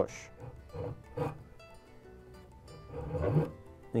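Soft background music, with two short rasps of a Gyokucho Razorsaw dozuki (Japanese back saw) being pushed lightly into hardwood to set the blade at the start of a dovetail cut; the second rasp comes about a second in.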